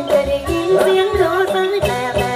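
Live amplified song: a singer holds and bends a long note over band backing with a steady drum beat.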